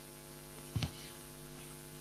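Low, steady electrical mains hum carried on the video-call audio, a stack of even tones, with one brief soft sound a little under a second in.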